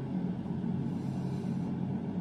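Steady low background hum, with no distinct clicks or knocks over it.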